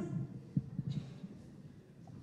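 Soft, irregular low thumps of a handheld microphone being handled and picked up, thinning out toward the end, over faint room tone.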